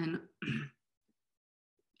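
A woman briefly clears her throat about half a second in, right after a spoken word ends, followed by complete silence.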